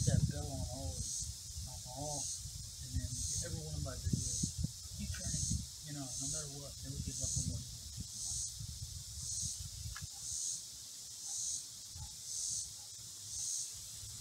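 Insects buzzing in steady high-pitched pulses, about one a second.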